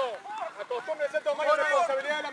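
Rugby players shouting calls to one another during a live drill, several voices overlapping.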